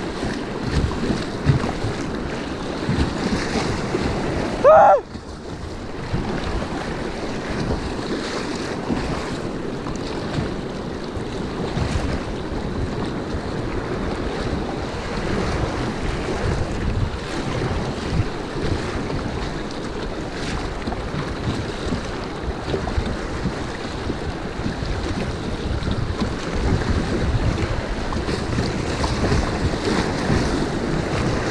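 Whitewater rapids rushing and splashing around a kayak, with wind buffeting the microphone. About five seconds in, a brief, loud high-pitched sound cuts in and stops abruptly.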